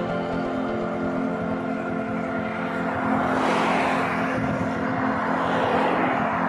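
A car passing close by on a road, its tyre and engine noise swelling and fading about halfway through, under steady background music.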